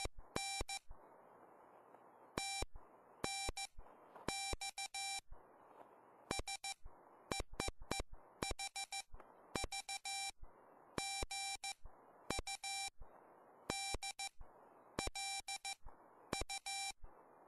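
Morse code sidetone from a RockMite 40 QRP CW transceiver, keyed by hand: a single mid-pitched beep switching on and off in groups of dots and dashes. Faint shortwave receiver hiss fills the gaps between characters.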